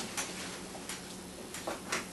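Rubber mold being peeled back off a cast part: a few scattered soft clicks and rustles, over a steady low hum.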